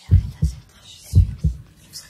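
Heartbeat sound effect: deep lub-dub double thumps about a second apart, twice.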